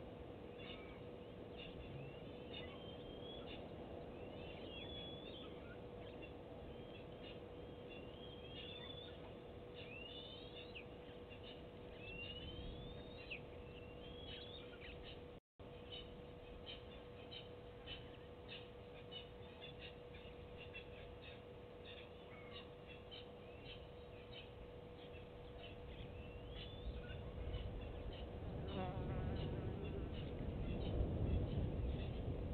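Outdoor bush ambience: small birds calling in quick whistled glides through the first half, then short chips, over insect buzzing and a steady faint hum. The sound drops out briefly about halfway, and low noise rises near the end.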